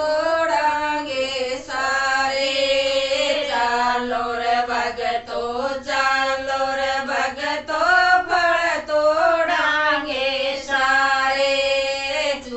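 A group of women singing a Haryanvi folk bhajan together, a continuous sung melody with no instruments standing out.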